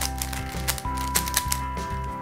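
A Dayan Megaminx's plastic faces being turned by hand, making a run of quick clicks, over background music with held notes and a steady bass.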